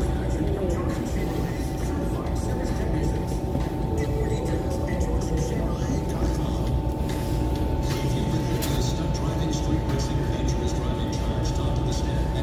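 Store ambience: a steady low rumble with indistinct voices and background music, and a few faint clicks.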